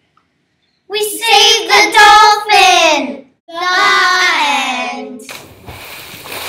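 Young children's voices in two long, high-pitched wordless calls, each falling in pitch at its end. A steady rushing noise follows near the end.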